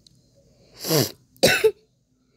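A person coughing twice in quick succession, the first about a second in and the second half a second later.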